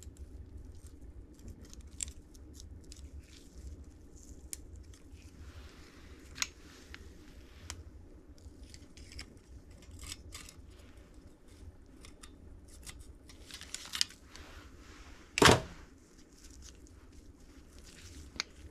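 Light metallic clicks and scrapes of a piston ring expander spreading a piston compression ring and working it over an aluminium piston into its groove, with one much louder sharp click about three-quarters of the way through. A steady low hum runs underneath.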